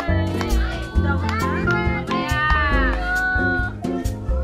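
Background music with a steady bass line, with voices over it.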